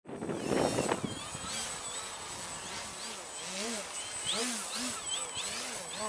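Electric motor and propeller of a foam RC aerobatic plane, its whine rising and falling in pitch in short repeated surges as the throttle is worked, over a thin steady high whine. A brief rush of noise comes in the first second.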